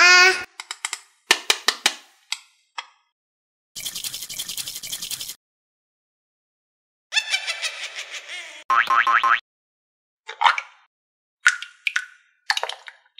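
A string of added cartoon sound effects divided by dead silence: a springy boing at the start, a quick run of clicks, a hissing burst about four seconds in, a rattling run of pitched blips about seven to nine seconds in, and a falling boing near the end.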